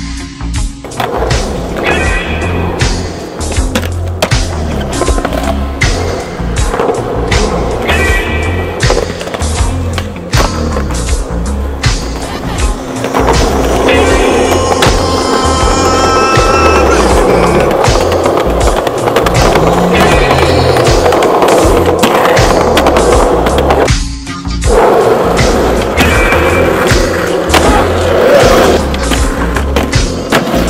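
Music with a steady bass beat, mixed with skateboard sounds: wheels rolling on concrete and repeated sharp clacks of tricks and landings. Everything cuts out briefly about three quarters of the way through.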